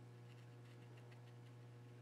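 Near silence: room tone with a steady low hum.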